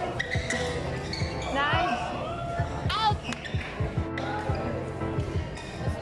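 Badminton rally on an indoor court: a string of sharp racket strikes on the shuttlecock and the thuds and squeaks of players' shoes on the court floor, over background music and voices.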